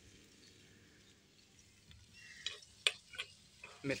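A steel spoon clicking against a small karahi as okra is stirred, a few light clicks in the second half over a faint frying hiss.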